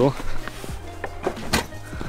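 A few knocks and clicks as camera gear is put into a car's open boot, the sharpest about one and a half seconds in, over background music.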